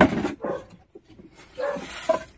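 A dog barking twice: once at the start and again near the end.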